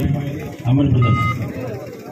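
A man's loud voice calling out in two drawn-out shouts, with a brief high beep about a second in.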